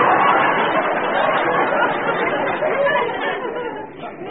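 Studio audience laughing at a punchline, a dense crowd laugh that dies away gradually near the end, on a narrow-band old broadcast recording.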